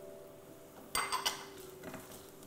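Kitchenware clinking against a cooking pot as vegetables are tipped in and stirred: a quick cluster of ringing clinks and knocks about a second in, then a lighter knock near the end.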